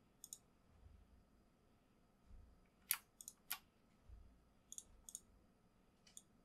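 Computer mouse button clicks: about six sharp, faint clicks over near-silent room tone, one near the start, three around the middle and two near the end, the loudest just before three seconds in.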